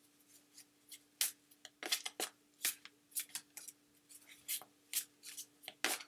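A deck of oracle cards being shuffled by hand: irregular sharp snaps and riffling rustles of card stock, with a faint steady hum underneath.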